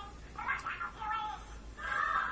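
A young child's high-pitched voice sounding briefly about half a second in, then music rising in near the end.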